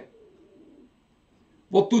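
A man reading aloud in Urdu pauses after a phrase and starts the next word near the end. Early in the pause there is a faint low sound lasting under a second.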